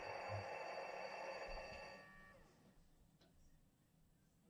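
Model diesel locomotive's onboard sound system playing a steady engine hum that drops in pitch and fades out about halfway through, leaving near silence: the locomotive shutting down.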